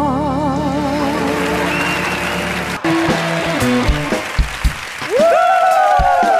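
A singer holds a long note with wide vibrato over the band and audience applause. About three seconds in, an abrupt cut brings in the accompaniment of the next song, with guitar and drum hits. Near the end a voice sings one long note that swoops up, holds and falls away.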